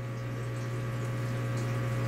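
A steady low hum with a soft, even hiss behind it, rising slightly in level; no distinct event.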